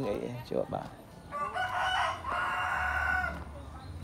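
A rooster crowing once, one call of about two seconds with a short break partway through.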